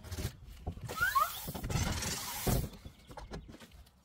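Mityvac hand fluid pump and hose pushing the last of the fluid into the transmission fill hole: small clicks and two short rising squeaks about a second in, then a hiss lasting under a second, and the hose is pulled free.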